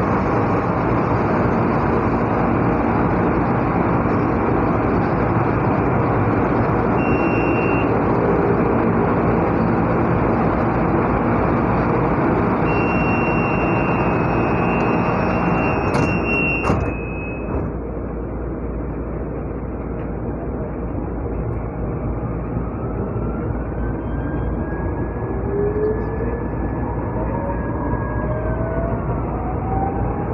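Inside a crowded MRT-3 light-rail car, the train makes a loud, steady rumble, with a brief high steady tone twice in the first half. About two-thirds of the way in the noise drops suddenly, and near the end a faint electric whine rises in pitch.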